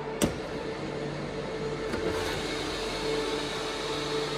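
The top-cover release latch of a Dell PowerEdge R740 server clicks once, sharply, about a quarter second in, as the cover is opened. Underneath runs the server's steady fan whir with a constant hum.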